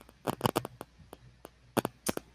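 A quick, irregular run of small sharp clicks and taps, some in close pairs.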